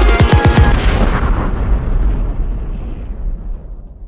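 Trailer-style closing boom: a heavy impact with a quick run of falling bass sweeps ends the electronic music, then a long rumbling tail slowly fades out.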